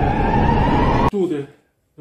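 A loud added superpower sound effect: a rush of noise with a rising tone that cuts off suddenly about a second in, followed by a brief voice-like sound.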